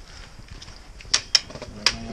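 Trekking poles knocking against rock: three sharp clicks, the last near the end.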